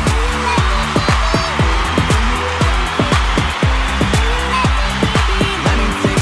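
Electronic pop dance music in an instrumental break: a steady kick-drum beat over a synth bass and held chords.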